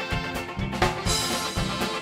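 A live polka band of saxophones, accordion, banjo and drum kit plays a Christmas tune with a steady low beat about twice a second. There is one sharp accent just under a second in.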